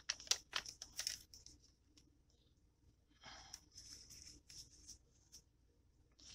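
Paper and cardstock pages of a handmade journal being handled and unfolded: a few sharp rustles and flicks in the first second or so, then a softer rustle about three seconds in.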